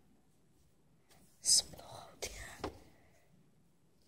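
A person's whisper, a short hissy breath of sound about a second and a half in, followed by a few soft noises and faint clicks.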